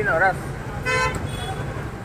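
A vehicle horn gives one short, steady toot about a second in, over the low rumble of street traffic.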